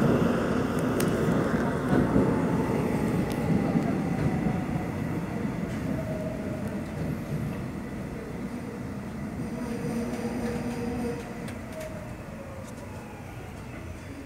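Subway electric train braking into a station. Its running noise fades as it slows, with the traction motors' whine gliding in pitch, and it gets quieter from about eleven seconds in as the train comes to a stop.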